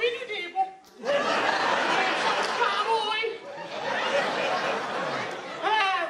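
A crowd of many people laughing together for several seconds. A single voice speaks briefly before the laughter and again as it fades near the end.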